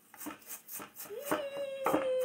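Knife chopping apple pieces on a wooden cutting board in quick, regular strokes, about five a second. About halfway in, a woman's voice joins with a steady held note over the chopping.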